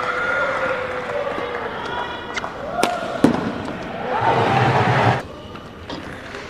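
Indoor badminton hall with voices, two sharp racket-on-shuttlecock cracks about three seconds in, then a burst of shouting lasting about a second that stops suddenly.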